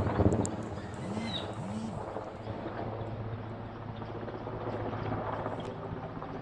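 Helicopter flying overhead at a distance, its rotors and engine making a steady low drone.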